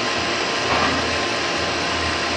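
Steady machine whirr: an even hiss over a low, constant hum, with no change in level.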